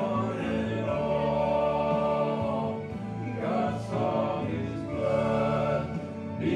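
Male gospel quartet singing a song together, several voices sustaining notes over one another.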